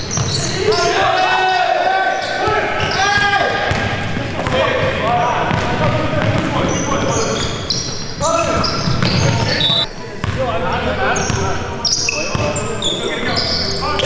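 Live sound of an indoor basketball game: players shouting and calling to each other, a basketball bouncing on the hardwood court, and short high squeaks of sneakers, all ringing in a large gym.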